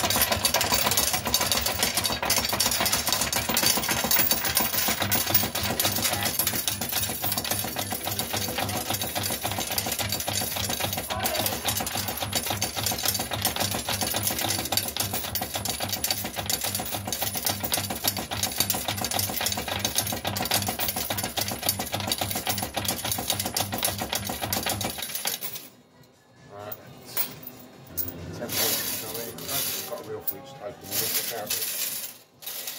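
Fruit machine's coin hopper paying out the bank: a long, rapid, continuous rattle of coins clattering into the payout tray that cuts off suddenly about 25 seconds in.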